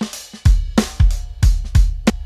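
A recorded acoustic drum kit playing back in a steady beat, with kick, snare and cymbal hits. The drums run through the Lindell 80 Series, a Neve-style channel-strip plugin with preamp drive, EQ and compressor.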